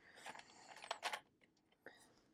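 Small plastic containers of diamond-painting drills clicking and rattling faintly as they are lifted out of a plastic storage case and set down. The clearest clicks come about a second in.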